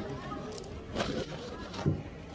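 Faint voices in the background, with two knocks: a sharp one about one second in and a louder, duller thump near the end.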